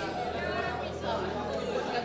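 Several people talking over one another at once, an indistinct jumble of voices.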